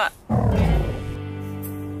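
Post-production music sting marking a failed mission: a short, low, falling rumble, then a steady held music chord.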